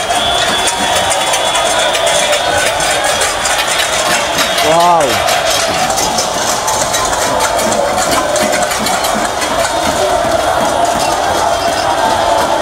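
A large street crowd's many voices shouting and chanting together in an unbroken din, with one loud rising-and-falling call standing out about five seconds in.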